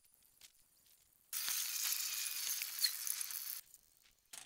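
Crushed aluminium soda cans sliding and rattling together as a heap of them is tipped out. It is a rustling hiss with a few light clinks that starts about a second in and stops abruptly near the end.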